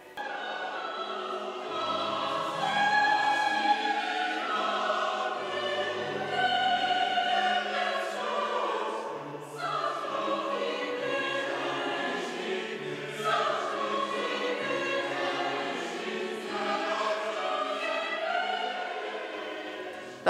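Mixed choir singing a classical choral piece in long held chords, with a brief break between phrases a little past halfway.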